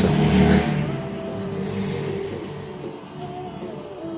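Background music with long held notes, gradually getting quieter.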